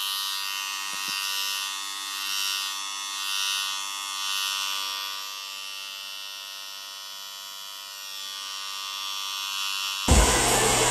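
Electric hair clipper buzzing steadily as it trims a short buzz cut around the ear, its sound swelling and fading as it is moved against the head. A faint click comes about a second in.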